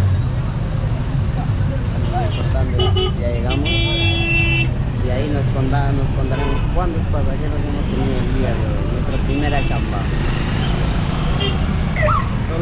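Busy street traffic heard through a minibus's open window: a steady low engine and traffic rumble with voices around, and a vehicle horn sounding for about a second roughly four seconds in.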